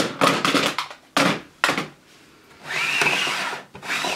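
Plastic makeup powder jars and compacts clattering as they are handled, in two short bursts of rattling clicks, then a clear acrylic storage box slid across a countertop for about a second near the end.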